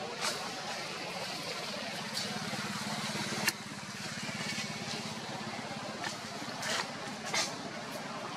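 A low, steady engine hum with a fine even pulse, which eases about halfway through. A few sharp clicks cut across it, the sharpest about halfway and two more near the end.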